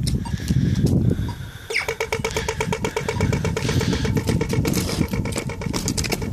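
Australian pedestrian crossing signal changing to walk: a short falling zap tone about two seconds in, then rapid, even ticking that carries on. Before it comes a low rumble.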